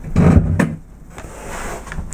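A car door being opened: sharp clicks and a knock from the handle and latch in the first half second or so, then a fainter hiss.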